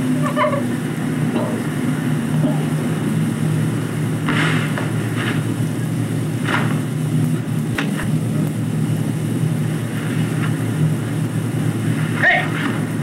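Steady mechanical hum and rumble of a Steenbeck flatbed editing table running a 16mm work print, with a few brief, sharper noises about four to eight seconds in.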